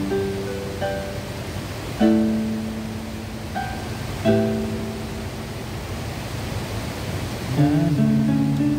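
Electronic keyboard playing an instrumental passage with a plucked, guitar-like tone: chords struck about two seconds apart and left to ring and fade, with a new chord near the end. A steady rush of water from the weir sits underneath.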